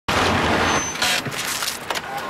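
A car driving over a gravel road, its tyres rolling and crunching over the stones. There are two loud rushes of noise, the second about a second in, then quieter crackling.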